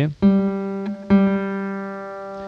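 Steel-string acoustic guitar's open third (G) string plucked twice with a thumb downstroke. The second note comes about a second after the first, and each rings on and slowly fades.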